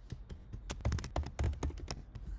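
Typing on a computer keyboard: a quick, irregular run of keystroke clicks as a short word is typed.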